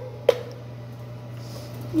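Wooden spoon stirring a thick sweet mixture in a stainless steel pot, with one sharp knock of the spoon against the pot shortly after the start, over a steady low hum.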